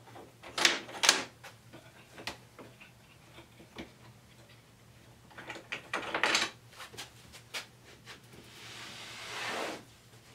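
Hold-down clamps on a CNC wasteboard being loosened and moved: two sharp clacks about a second in and a cluster of knocks and rattles around the middle. Near the end, a longer scraping as the plywood board is slid across the wasteboard.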